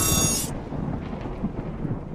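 Deep rumbling boom of a sound effect dying away slowly, with a high hissing burst that cuts off about half a second in.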